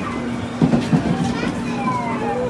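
Busy children's arcade din: children's voices and chatter over a steady hum, with two brief louder bursts around the middle.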